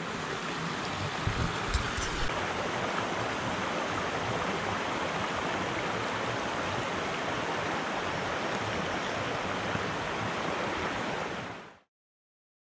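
Steady rushing of a shallow stream flowing across the footpath, with a couple of low knocks about a second and a half in; the sound cuts off suddenly near the end.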